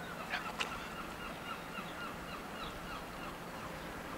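Faint bird calls, a row of short repeated notes over quiet outdoor background.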